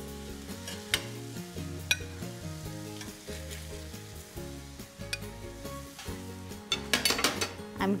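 Tomato sauce sizzling in a stainless steel sauté pan while a metal spoon scrapes and clinks against the pan and plate as meatballs are lifted out of the sauce, with sharp clinks about one and two seconds in and a quick run of clinks near the end. Soft background music underneath.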